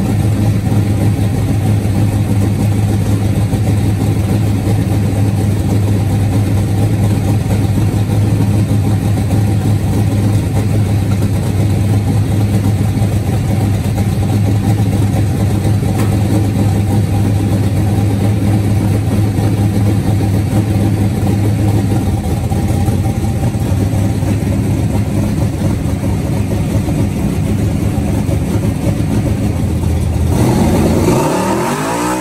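1966 Chevelle station wagon's big-block Chevy V8 idling loud and steady, the low note easing a little about two-thirds of the way through.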